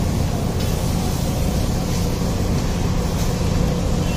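A steady low rumble with a hiss over it, running evenly without breaks.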